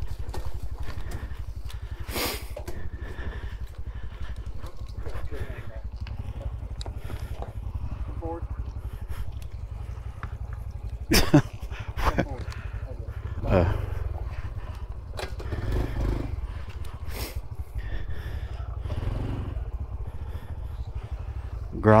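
Honda CT125 Trail's small single-cylinder engine idling with a steady low hum. A couple of short, sharp louder sounds come about halfway through.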